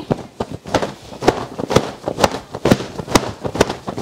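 Satin fabric of a double-layer bonnet being shaken and flapped by hand, giving sharp snaps and rustles about three or four times a second.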